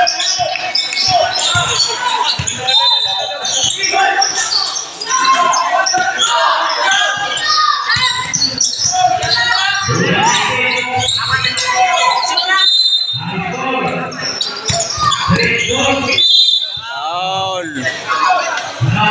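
A basketball bouncing on a hardwood-style court during play, with players and spectators talking and shouting, echoing in a large hall.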